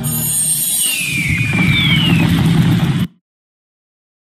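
Electronic sound effects from the Shining Crown slot game: a low rumble with two short falling whistle tones in the middle, stopping abruptly about three seconds in.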